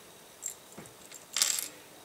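Small plastic LEGO pieces clicking and clattering as a hand pushes them across a hard tabletop: a light click about half a second in, then a short rattle just past the middle.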